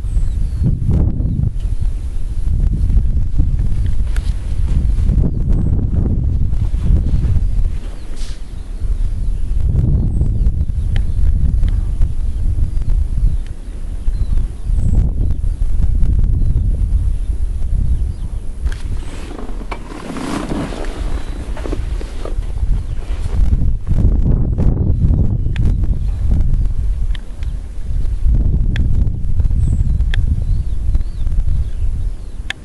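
Wind buffeting the camera's microphone: a loud, low rumble that rises and falls in gusts, with a stronger, brighter gust about two-thirds of the way through.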